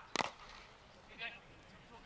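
A single sharp crack of a cricket bat striking the ball, just after the start. About a second later there is a brief, faint call.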